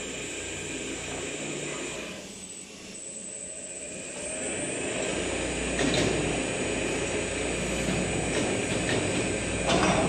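Steel fabrication workshop machinery: a steady mechanical rumble that dips briefly, then grows louder about halfway through, with a sharp clank about six seconds in and another near the end.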